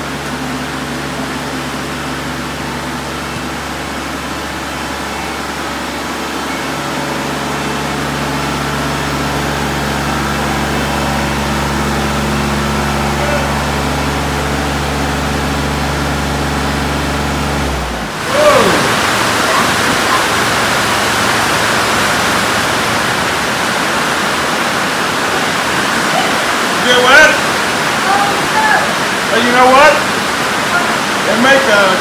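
Kubota L3301 compact tractor's three-cylinder diesel engine running at a steady low hum as the tractor is driven in. About two-thirds of the way through, the hum cuts off abruptly and is replaced by a steady rushing noise, with brief voice sounds near the end.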